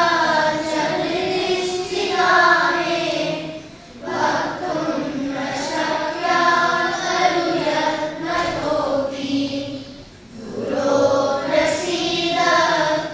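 A group of children chanting Sanskrit verses in unison, in a sung, melodic recitation. The phrases are long, with short breaks for breath about four seconds in and again about ten seconds in.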